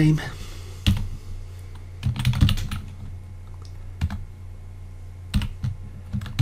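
Computer keyboard keys being typed in short, scattered runs over a steady low hum.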